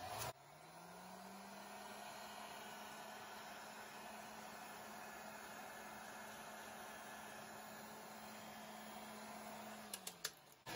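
Faint heat gun running: its fan motor hum rises in pitch as it spins up in the first second, then holds steady with a rush of air, and starts to wind down at the end.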